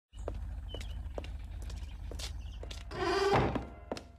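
Footsteps at a steady walking pace, about two a second, then a wooden door creaking open loudly and drawn-out about three seconds in.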